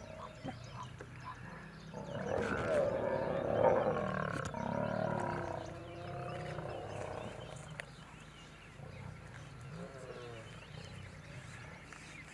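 Male lions snarling and growling in a territorial fight, a loud bout from about two seconds in that eases off after about seven seconds into lower, weaker growls.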